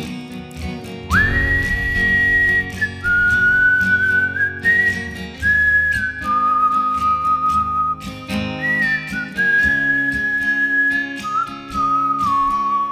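A man whistling a slow melody of held notes that step up and down, over a strummed acoustic guitar. The whistle comes in about a second in, pauses briefly around two-thirds of the way through, then carries on.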